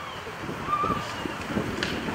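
Outdoor ambience in a pause: wind on the microphone, with faint, scattered voices from the crowd.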